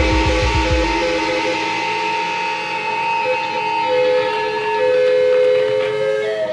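Live rock band's electric guitars holding long, sustained notes as the song winds down; the pulsing low beat of bass and drums stops about a second in.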